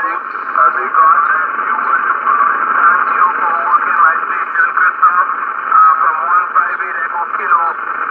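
A distant ham radio operator's single-sideband voice coming out of a Yaesu FT-840 HF transceiver's speaker, thin and band-limited, over a steady hiss of band noise, with the signal rising and falling in strength.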